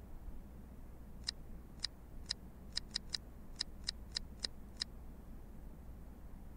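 Plex media center's short electronic menu clicks, about eleven in a row at an uneven pace over a few seconds, one for each step as the movie list is scrolled.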